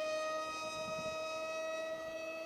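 Brushless 2212-size 2200 Kv outrunner motor spinning a 6x4 APC propeller on a foam RC F-22 park jet in flight: a steady high whine, holding one pitch and fading slightly.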